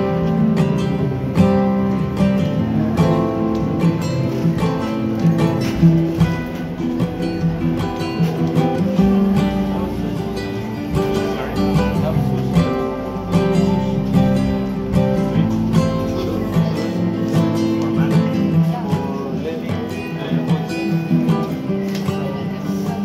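Background music of a strummed acoustic guitar.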